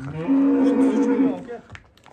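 A cow moos once: one steady call of about a second and a half that fades out.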